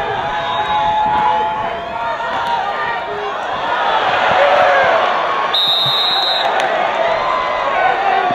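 Football stadium crowd: many voices shouting and cheering together, swelling around the middle. A high, steady whistle blast lasting about a second sounds a little after the middle.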